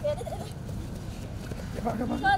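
A football is kicked on grass at the start, and short, high shouts and calls come from the children playing, once just after the kick and again near the end, over a steady low rumble of outdoor noise.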